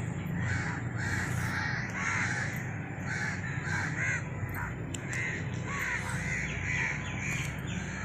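Many birds calling over and over, with several short caw-like calls a second overlapping, and a low steady rumble underneath.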